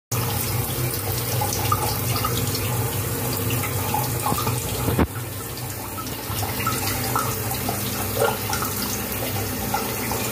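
Water running and splashing steadily through the plastic basins, chutes and pipes of a toy water-run, with one sharp click about halfway through.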